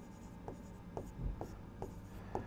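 Marker pen writing on a board: a few faint, short strokes as a word is written out.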